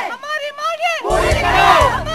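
Crowd of protesters, many of them women, shouting slogans together in high, strained voices. About a second in, a low rumble joins underneath the shouting.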